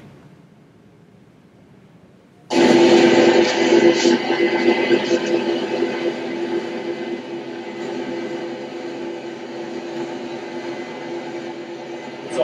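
Combine harvester running as it cuts oats, played back over a hall's loudspeakers. It cuts in suddenly about two and a half seconds in, after a quiet start, as a loud steady mechanical drone with a constant hum.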